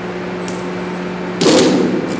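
A single loud volley from a ceremonial rifle detail, part of a rifle salute at a burial at sea, about one and a half seconds in, ringing out briefly afterwards. A steady low hum runs underneath.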